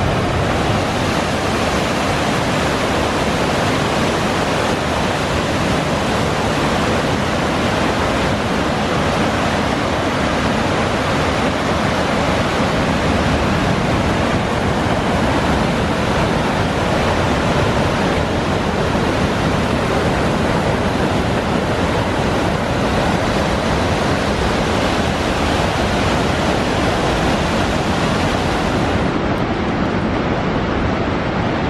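Steady rushing of a broad waterfall and rapids pouring over rock, one continuous wash of water noise.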